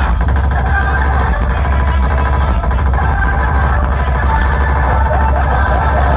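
Loud electronic dance music with a heavy, unbroken bass, played over stacked DJ loudspeaker boxes.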